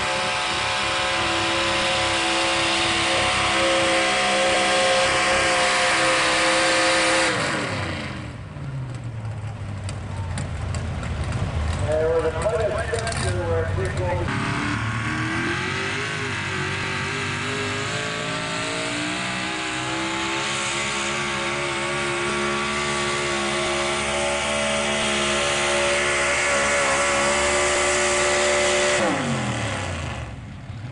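Pickup truck engines at full throttle in a truck pull, held at high steady revs while dragging a weighted pulling sled. About seven seconds in the engine note falls away as the pull ends, and after a cut a second truck's engine holds high revs until it drops off near the end.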